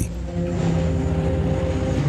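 Jet airliner taking off: a steady, even rushing of its turbofan engines at takeoff power as it climbs away.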